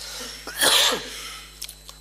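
A single loud cough, about half a second in, picked up close on the chamber microphone.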